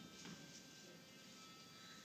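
Near silence, with faint thin steady tones from a wind-up record player playing a record, barely above the room hiss.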